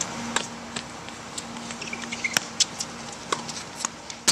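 Tennis ball struck by rackets and bouncing on a hard court during a rally: a string of sharp pops, the loudest a little past halfway, over a steady low hum.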